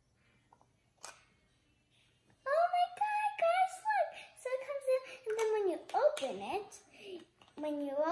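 Near silence with a faint click about a second in, then a young girl's voice from about two and a half seconds in, talking on to the end.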